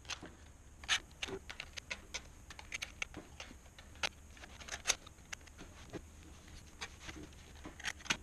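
A knife trimming the edge of a thick leather outer sole: an irregular string of sharp little clicks and snicks as the blade bites through the leather, a few of them louder.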